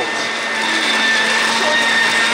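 Vitamix blender motor running steadily at top speed, a steady whine over a low hum, spinning the aerating container's perforated disc through liquid and ice to whip the drink into froth.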